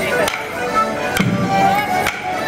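Accordion playing a Morris dance tune over a bass drum beat, with the dancers' wooden sticks clacking together in time about once a second.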